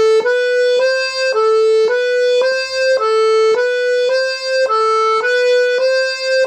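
Two-row G/C melodeon (diatonic button accordion) playing a right-hand exercise: the notes A, B and C, fingered three, two, four, repeated round and round with the bellows on the pull. The notes are even, a little under two a second.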